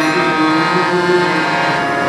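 Harmonium held in sustained reedy chords under a man's long sung note, in a devotional prayer song.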